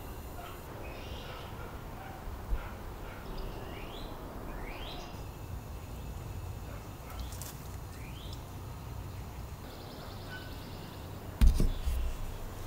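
Outdoor ambience: small birds chirping, several short rising calls, over a steady low rumble. A sharp knock sounds near the end.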